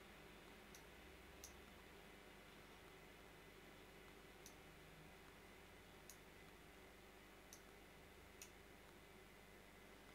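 Near silence broken by about six faint, scattered computer mouse clicks.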